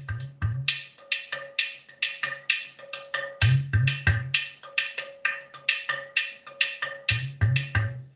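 Recorded percussion music: quick, dry knocking strokes, several a second, over a steady held tone. Short clusters of deep drum hits come near the start, around the middle and near the end.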